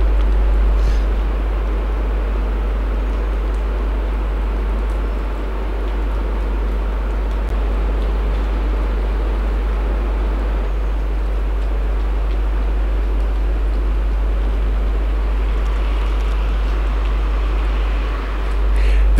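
Steady outdoor background noise with a strong low rumble, even throughout, with no distinct events.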